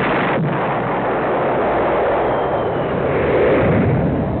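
Explosion-style sound effect in a logo sting: a long, dense noisy rumble that holds loud and steady, swelling slightly near the end.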